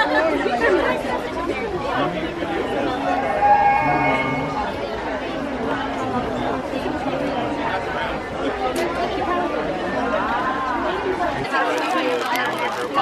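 Talking My Little Pony Princess Celestia toy speaking in Greek after its button is pressed, over the chatter of a crowded hall.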